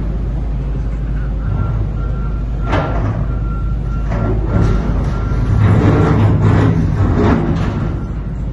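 Excavator working in a rubble-filled tunnel breach: a steady low diesel engine rumble, with clattering and scraping of rock and debris, loudest about six to seven seconds in.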